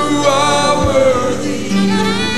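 Slow gospel worship song: a man singing with vibrato over held keyboard chords, with choir voices behind him.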